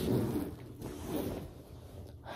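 A black fabric backpack being handled: cloth rustling and a zipper being pulled, louder in the first second and tailing off.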